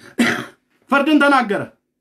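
A man coughs once, short and rough, then clears his throat in a longer sound that falls in pitch.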